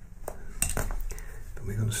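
Wooden pastel pencils clicking and clinking against each other several times as one pencil is put down and another picked up.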